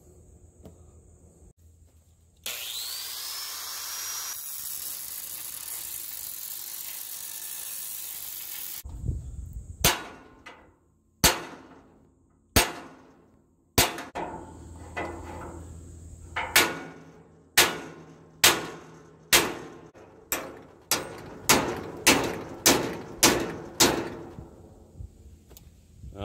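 Angle grinder fitted with a Diablo diamond metal cut-off blade spins up with a rising whine and runs for about six seconds. Then a hammer strikes steel more than a dozen times, each blow ringing briefly, the blows coming faster toward the end, as the rusted-solid feet are knocked at on the metal cabinet frame.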